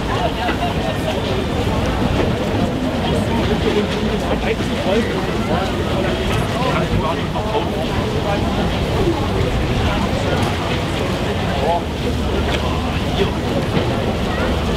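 Indistinct chatter of several passengers talking in groups on an open ship deck, over a steady low rumble.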